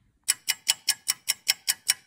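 Clock-ticking sound effect: quick, even ticks about five a second, starting about a quarter second in.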